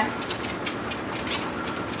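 Motorized treadmill running steadily, with a dog's paws trotting on the moving belt in an even, quick rhythm of footfalls.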